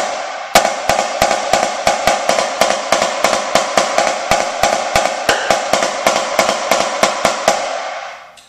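Premier marching snare drum played with sticks in the double-beat rudiment: an even run of double strokes (diddles), the snare wires buzzing under each stroke. It starts about half a second in and stops just before the end.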